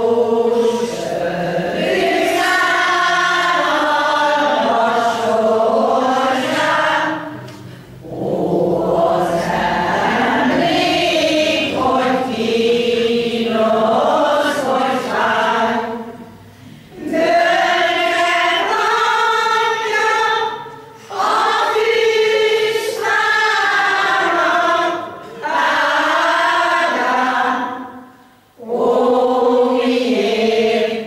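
A Hungarian folk-song choir of mostly older women with a few men singing together, in phrases with short breath pauses between them.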